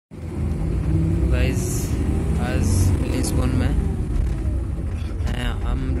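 Steady low engine and road rumble heard from inside a moving shuttle bus, with short snatches of people's voices over it.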